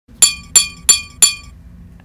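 Four quick taps on glass, about three a second, each with a short bright ringing clink.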